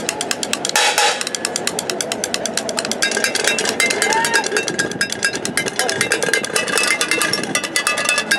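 Drumsticks beating a fast, dense roll on upturned metal pots and pans. Ringing metal tones join in from about three seconds in.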